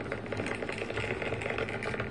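Continuous crackling and rustling handling noise, dense with small clicks, from a hand holding a sheet of notebook paper close to the microphone.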